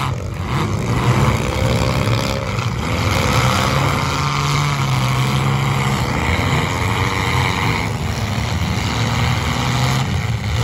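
Several demolition derby compact cars running and revving hard together, their engines overlapping in a loud, uneven drone that rises and falls.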